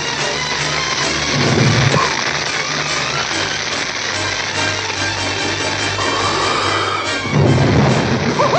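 Film score music over a steady rushing noise of fire sound effects, swelling louder near the end.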